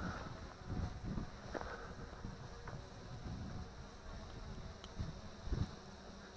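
Faint, steady buzz of the MJX Bugs 2W brushless quadcopter's motors and propellers as it descends overhead to land.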